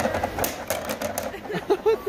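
Rubber rings tossed onto a hard round tabletop, clattering and rattling as they spin and settle, in a quick run of irregular clicks.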